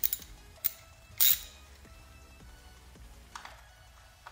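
Metal hand tools clinking: a ratchet with an extension and 10 mm socket set onto the camshaft position sensor's bolt, three short sharp clinks in the first second and a half, the loudest about a second in. Quiet background music runs underneath.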